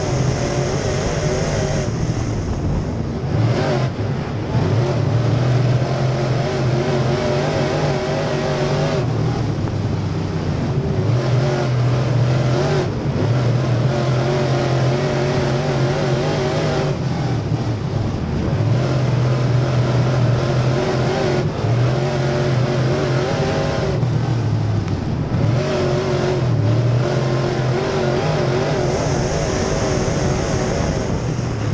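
Super Late Model dirt car's V8 racing engine heard from inside the car at race speed, its note climbing under throttle and dropping back every few seconds as the driver gets on and off the gas around the track.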